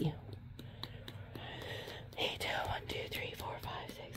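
A woman whispering softly under her breath from about two seconds in, her voice breathy with no clear pitch, over the faint handling of small plastic bottles in a storage case.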